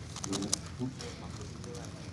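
Galaxy V2 M Megaminx being turned at speed, its plastic layers clicking in quick, irregular bursts during a timed solve.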